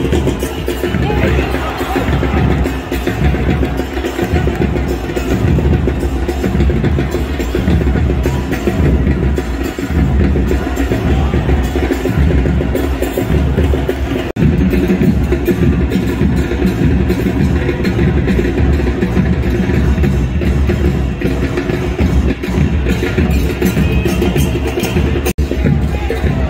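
Stadium drums beating a steady, repeating rhythm, with music carried over them, as from a supporters' band in the stands.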